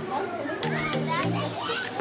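Children's voices calling and chattering in the background over music with a steady, stepping bass line.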